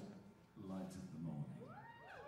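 Live rock concert heard from the audience at a hushed moment: a soft voiced 'mm-hmm', then faint gliding tones that rise and fall in pitch, as a loud sustained note dies away.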